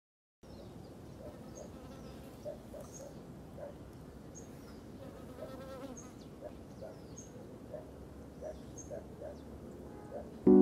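Faint outdoor garden ambience of flying insects buzzing steadily, with a bird repeating a short high chirp about every second and a half.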